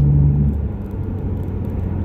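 Steady low rumble of a car's engine and tyres, heard from inside the cabin while driving.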